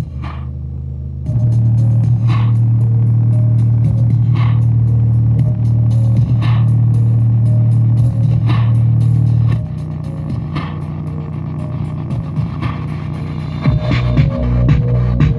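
Sony car speaker in a cardboard box, driven hard with bass-heavy music: a steady deep bass tone with a sharp hit about every two seconds. The bass is louder from about a second in until nearly ten seconds in.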